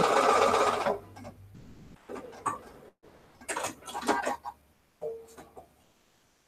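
Domestic electric sewing machine stitching through a quilt block: a fast run of stitches in the first second, then a few short bursts of stitching.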